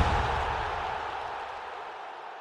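The tail of an end-card sound effect: a deep boom with a whoosh, fading away steadily in a long reverberant decay.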